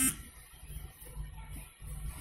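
Sewing machine running as piping is stitched onto blouse fabric, a low steady hum that grows stronger about a second in. A short sharp sound comes right at the start.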